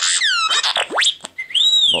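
R2-D2 droid sound effect played through a smartphone speaker: a quick run of electronic whistles and chirps, with falling sweeps, then a fast rising whistle about a second in, ending on an arching warble that rises and falls.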